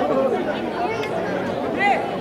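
A crowd of people chattering, many voices talking at once.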